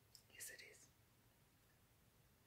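Near silence, with one faint, brief breath or whisper-like mouth sound about half a second in.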